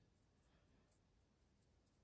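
Near silence: room tone, with two faint ticks about half a second and about a second in.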